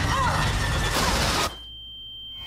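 Movie trailer sound design: a dense, noisy rumble with a faint wavering cry over it, cutting off abruptly about one and a half seconds in and leaving only a low hum.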